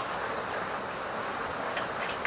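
Steady background hiss, with one faint click near the end.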